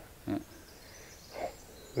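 A man says a short "yeah", then there is quiet outdoor background, with a faint, brief vocal sound about one and a half seconds in.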